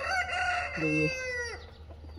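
Rooster crowing: one long call of about a second and a half that drops in pitch as it ends.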